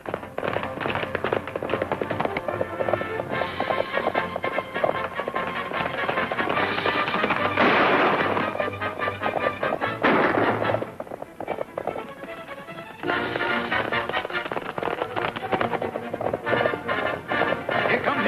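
Dramatic orchestral film score for a chase, over a fast, dense clatter of galloping horses' hooves. There are two louder noisy swells about eight and ten seconds in.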